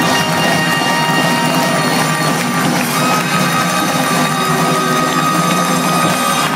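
Live rock band with a horn section playing loudly at full stadium volume near the end of a song. A long, high held note comes in about halfway through over the rest of the band.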